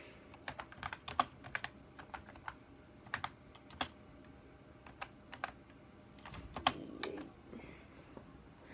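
Uneven keystrokes on a computer keyboard, sharp clicks a few a second with pauses, then a brief rustle of movement near the end.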